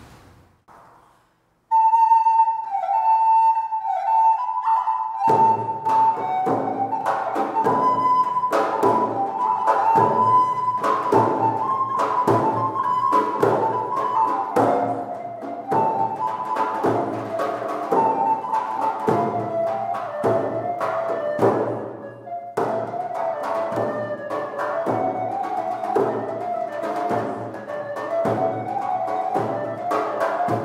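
Medieval estampie played by an early-music ensemble: a flute-like wind melody begins about two seconds in, and a steady drum beat joins about five seconds in.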